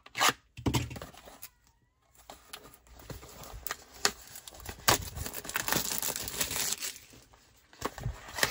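Plastic shrink wrap being torn and peeled off a sealed cardboard trading-card box, crinkling with sharp crackles from about two seconds in. There is a short knock near the start.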